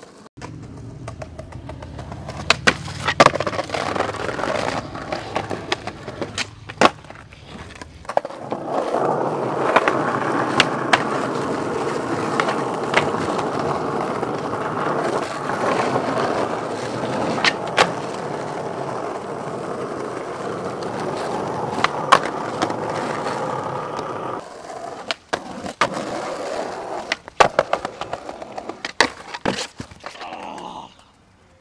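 Skateboard wheels rolling on street asphalt, a steady rolling noise that gets louder and rougher from about eight seconds in, broken several times by sharp clacks of the board popping and landing, several in quick succession near the end.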